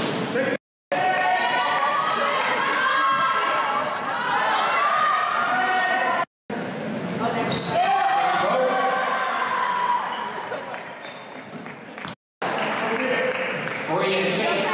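Basketball game sound in a large gym: many crowd and player voices with shouts, a ball bouncing, and short high squeaks of shoes on the court. The audio cuts out briefly three times, where the clip jumps between moments of the game.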